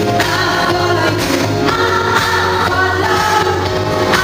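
A woman singing a pop song live into a handheld microphone over loud backing music, with a strong steady bass line and sustained sung notes.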